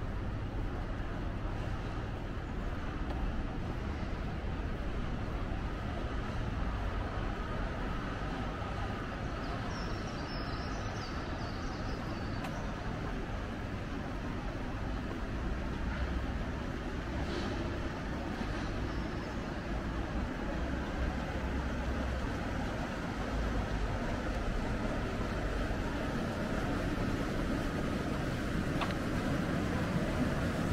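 Steady city background hum of distant road traffic, a low rumble with no single vehicle standing out. A few faint high chirps come through about ten seconds in and again a little later.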